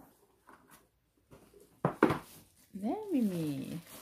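Two sharp knocks close together as a cardboard cat scratch pad is set down on a tile floor, followed about a second later by a single rising-then-falling vocal call.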